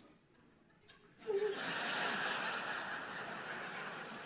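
Stand-up comedy audience laughing: after about a second of quiet, the crowd's laughter starts suddenly and carries on steadily, fading only slightly.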